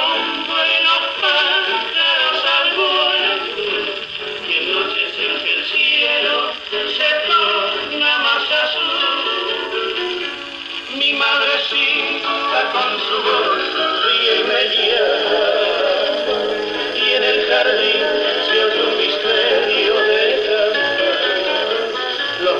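A portable acoustic gramophone playing a 78 rpm record of a criollo waltz. The sound is thin, with no bass.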